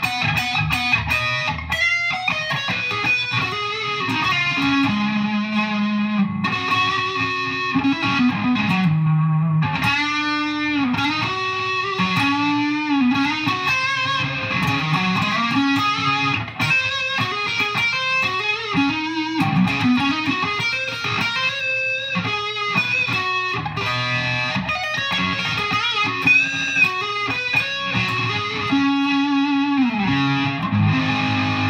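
Electric guitar (a PRS with PAF-style humbuckers, on the neck pickup) played through the Digitech RP-80's 'Stack' preset, a high-gain stacked-amp distortion tone. It plays single-note lead lines with notes that bend and waver in pitch.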